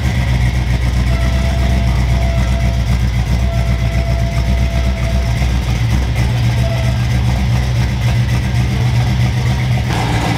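A box Chevy's engine idling with a steady deep rumble.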